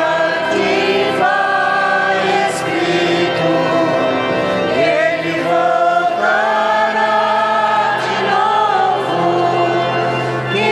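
Choir singing a hymn, with long held notes.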